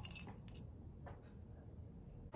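Faint metallic clinks as a small dog moves in a wire crate: a few light ticks in the first half second and another couple a little after a second in.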